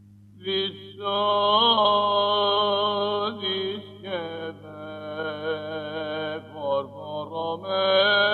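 A male cantor chanting a Byzantine hymn in plagal second mode, solo voice with melismatic ornaments, entering about half a second in after a brief pause. A steady low hum from the old 1970s recording runs beneath it.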